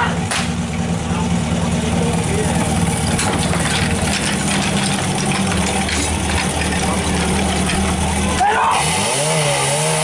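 Portable fire pump's engine running steadily, then, about eight and a half seconds in, revving hard with its pitch rising and dipping as it is opened up to pump.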